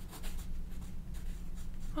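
Pencil writing on paper on a clipboard: a run of light, irregular scratching strokes over a low, steady hum.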